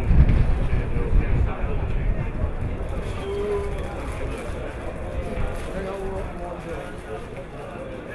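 Wind buffeting the microphone, strongest in the first second and a half and then easing, with indistinct voices of people nearby.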